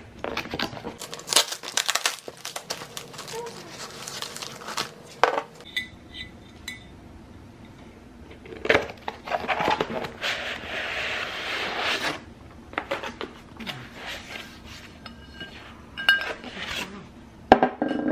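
A cardboard parcel being unpacked by hand: flaps handled and cardboard rustling, with a long scrape about ten seconds in as an inner box slides out. Near the end a ceramic plate knocks onto the table.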